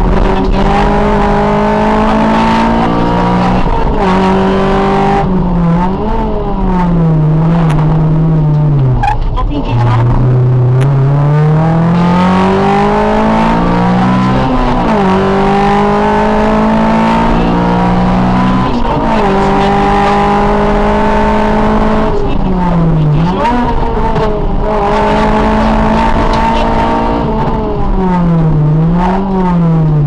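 Honda Civic rally car's engine heard from inside the cabin, driven hard on a rally stage: its pitch climbs steadily through each gear and drops sharply at each upshift, several times over, with brief dips and recoveries where the driver lifts or changes down for corners.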